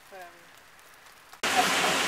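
A brief spoken 'um', then, at a sudden cut about one and a half seconds in, a loud steady hiss of rain begins.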